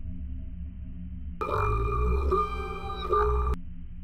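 A low, steady rumbling drone. From about a second and a half in, a louder sound of several held tones is laid over it for about two seconds, starting and stopping abruptly.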